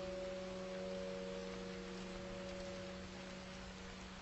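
Solo piano: a held chord slowly dying away over a faint steady hiss, with no new notes struck.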